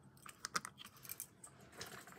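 Light clicks and clatter of small plastic and metal sanitizer-holder keychains being handled and set down: a handful of sharp ticks, the loudest about half a second in.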